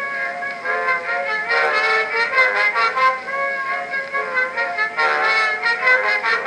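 Edison Amberola 30 cylinder phonograph playing a 1912 Blue Amberol cylinder: an instrumental band passage between sung verses. The sound is thin, with no bass, as from an early acoustic recording played through the horn.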